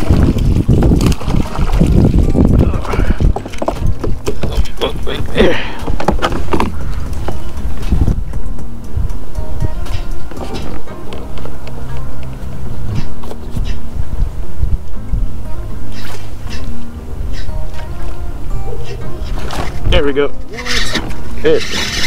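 A hooked sand trout splashing and thrashing at the surface beside a kayak, with water noise. Then background music with held tones takes over, and a man's voice comes in near the end.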